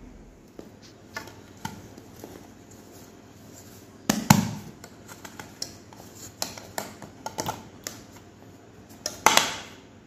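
Metal cake pan knocking and scraping on a countertop as it is turned upside down and tapped to release a baked banana bread. Light clicks throughout, with louder knocks about four seconds in and again near the end.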